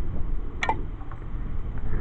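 Wind rumbling on the microphone, with one brief sharp sound about two-thirds of a second in as an arrow from a homemade longbow is shot and sticks in the turf.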